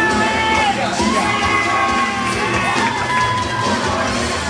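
Audience cheering and shouting in a large hall, many voices at once, with music playing underneath.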